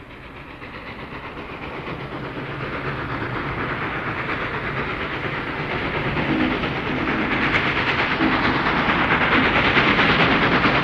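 Train sound effect opening a funk record: a locomotive chugging with quick, rhythmic puffs and hiss, fading in and growing steadily louder.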